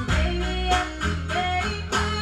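A live band playing: guitar to the fore over bass and drums, with a steady beat of about three to four hits a second and a held guitar note that bends up.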